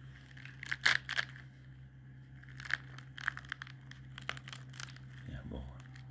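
A ripe Saveh pomegranate being broken apart by hand: the peel and pith tear and the arils crackle in a scattered series of sharp snaps and clicks, loudest about a second in, over a steady low hum.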